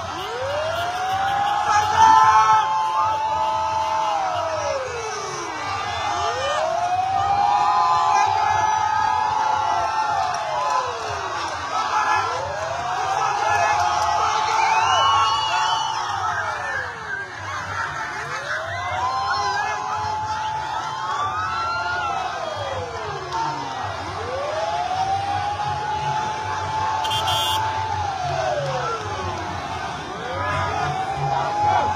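A vehicle siren wailing in slow cycles, five times: each rises, holds a high note for about two seconds, then slides down, about every six seconds. Under it is the constant shouting and cheering of a large crowd.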